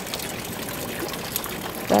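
Fountain water falling in a steady trickle into a stone basin.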